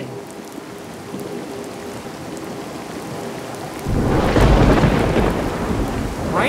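Steady heavy rain, then a loud clap of thunder about four seconds in that rumbles on, slowly easing.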